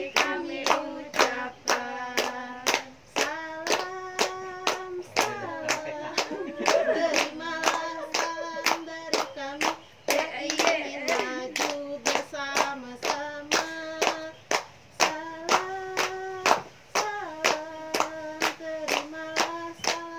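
A group of young women singing a song together while clapping along in a steady beat, about two claps a second.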